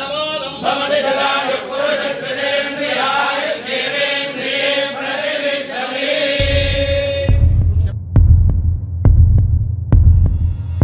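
Hindu priests chanting mantras in unison, with a steady held pitch under the moving chant line. About six and a half seconds in, the chant fades under background music with a deep, slow bass beat of roughly one pulse a second.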